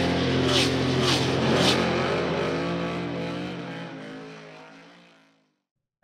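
A race car engine revving and holding, mixed into the end of a rock intro theme, with a few sharp hits in the first two seconds; it all fades out to silence a little over five seconds in.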